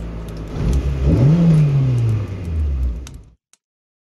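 Car engine revving as a logo-intro sound effect: the pitch climbs about a second in, then slides down and fades, cutting off a little after three seconds.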